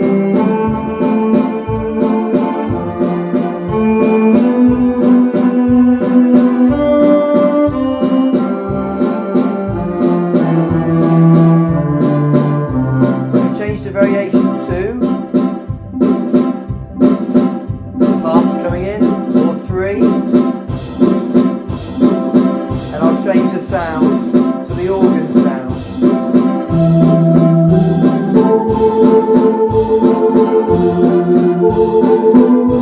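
Orla GT8000 Compact electronic organ playing a Viennese waltz: auto-accompaniment drums and backing chords under a melody played on the keyboards. A wavering vibrato lead voice comes in through the middle.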